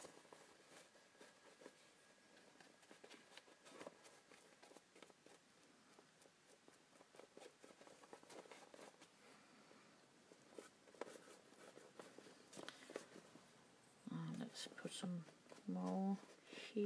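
Near silence with faint, scattered taps and rustles of hands handling paper and card, and a brief low voice near the end.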